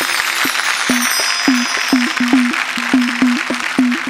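Instrumental folk percussion: hand drums played in a quick, regular rhythm, many strokes with a falling pitch bend. Bright chiming bells sound above the drums and die away about halfway through.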